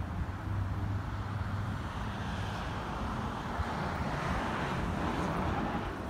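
Street traffic: a low engine hum that fades out about two seconds in, then a vehicle passing, its noise swelling and fading through the middle.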